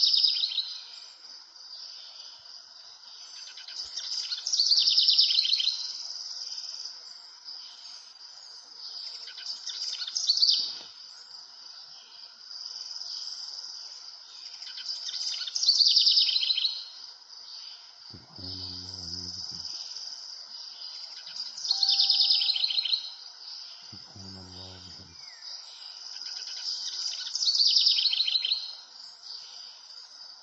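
A bird's loud trilling call, repeated every five or six seconds, over a steady background of insects chirring.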